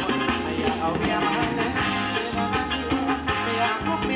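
Live band playing upbeat Thai ramwong dance music with a steady drum beat.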